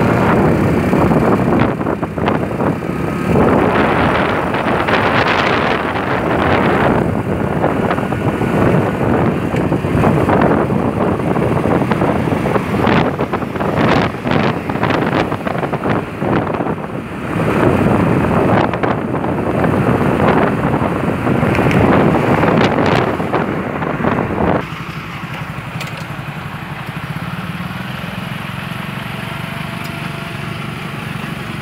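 Wind rushing over the microphone and road traffic noise while travelling in a moving vehicle, rising and falling in gusts. About 25 seconds in the sound drops suddenly to a quieter, steadier traffic hum.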